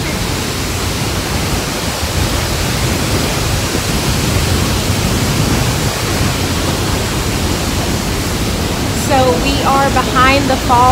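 Loud, steady rush of Niagara's Horseshoe Falls pouring down just outside a rock tunnel portal, a dense unbroken roar of water. A woman's voice breaks in about nine seconds in.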